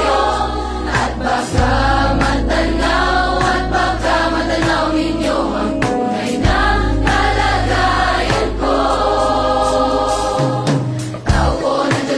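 A large choir of more than 400 voices singing in harmony over long, held low bass notes that change pitch a few times. Sharp drum hits come in near the end.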